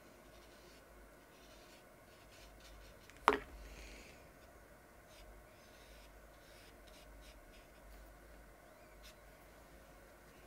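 Faint brushing and light scratching of a watercolour brush on cold-press watercolour paper, with one sharp click about three seconds in.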